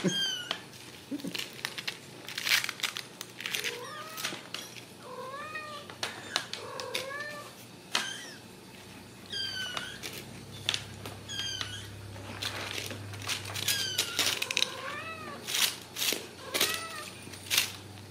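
Ragdoll kittens mewing: many short, high, rising-and-falling meows, some in quick runs of two or three. Scattered clicks and rustles from the kittens' play are mixed in with them.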